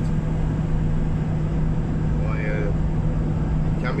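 Cabin noise inside a Ford Transit 2.4 TDCi diesel van on the move: a steady low road-and-engine drone with a constant hum.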